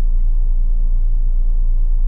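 A steady low rumble inside a stationary car's cabin.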